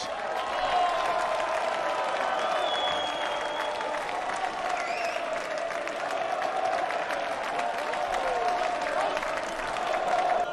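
Steady applause, many hands clapping, running evenly throughout.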